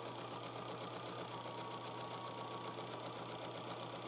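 Domestic sewing machine running steadily, stitching pieced quilt fabric with a fast, even rhythm of needle strokes.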